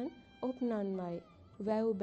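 A girl's voice chanting in a sing-song recitation with long held notes. One drawn-out line falls in pitch about half a second in, and after a short pause another held note begins near the end.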